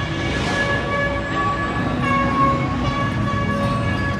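A held chord of several steady, horn-like tones over continuous background noise, with a short hiss about half a second in.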